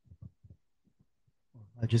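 Several soft, low thumps of handling noise on a handheld microphone as the man holding it walks and sits down, spaced unevenly through the first second. A man starts speaking near the end.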